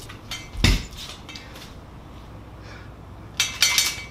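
Metallic clicks and clinks as the axle nuts are taken off a fixed-gear bike's rear hub, with a heavier knock about half a second in and a cluster of ringing metal clinks near the end.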